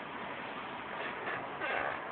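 Steady low background hiss, briefly a little louder near the end.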